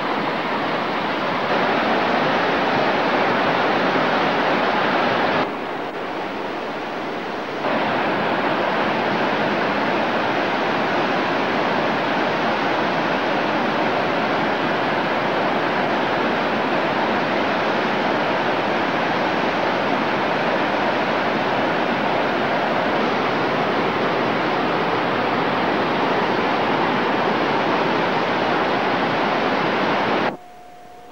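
The Dan stream, a headwater of the Jordan River, rushing over rocks in white water: a steady rush, which drops a little for about two seconds about five seconds in.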